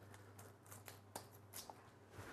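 Near silence, with a few faint clicks and rustles of small kit parts being handled.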